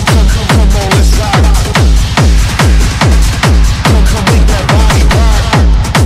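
Techno: a loud, steady kick drum at about two beats a second, each kick dropping in pitch, under a wavering synth line.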